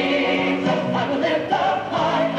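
Music with a choir singing, playing steadily for the dancers.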